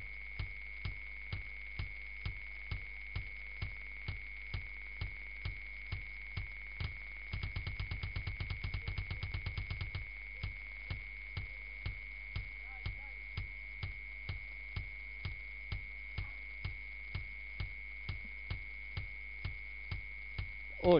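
Metronome-like clicking, about two even ticks a second, over a constant high tone and a low hum. About seven seconds in, a quick run of faster, low strokes sounds for a couple of seconds, like a kick drum being tried out.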